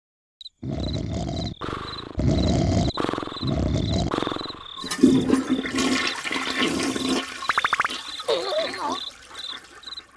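Animated-cartoon sound effects: a few surges of rushing, gurgling water like a toilet flush, over an even chirping of crickets. Later there is a short buzzing rattle, and near the end a brief wobbling cartoon vocal sound.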